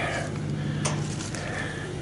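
Pickup truck engine idling steadily, with a couple of faint sharp clicks.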